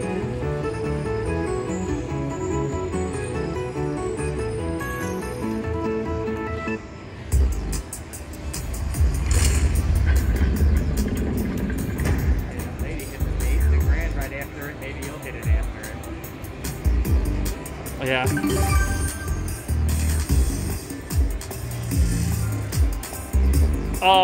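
Slot machine game sounds. First a Buffalo video slot's win tune of quick stepped notes while the win meter counts up. About seven seconds in it gives way to a louder, bass-heavy bonus soundtrack with repeated thumps and sweeping effects from a Lock It Link Superlock machine's vault and wheel feature.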